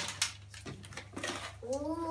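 Snack packages being rustled and handled, with a couple of light knocks, then a drawn-out voice-like call near the end.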